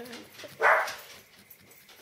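A dog barking once, a short sharp bark a little over half a second in: an alert bark at people coming, as the owner reads it.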